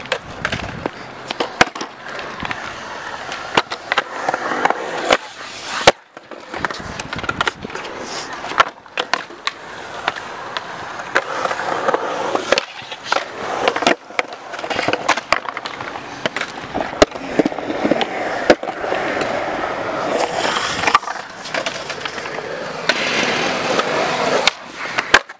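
Skateboard wheels rolling on smooth concrete, with sharp clacks of the board popping and landing throughout. The board also scrapes and knocks on the metal coping.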